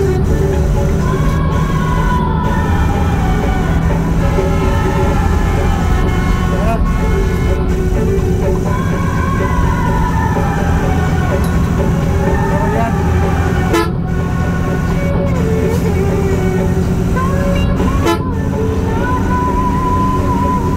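Steady low rumble of a vehicle driving along a highway, with a song with a singing voice playing over it and a few horn toots.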